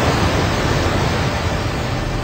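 Steady rushing of falling water, an even wash of noise with a low hum beneath it.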